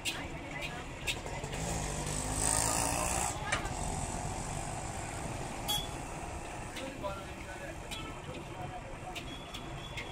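A metal ladle clinking and scraping now and then against a large iron kadai at a street food stall, over steady street noise with voices. A vehicle passes about two to three seconds in, the loudest moment.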